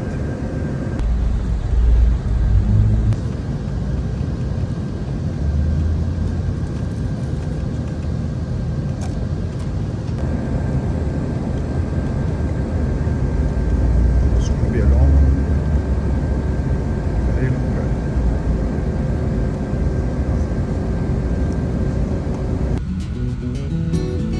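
Inside a coach bus on the highway: a steady rumble of engine and road noise, swelling louder a few times.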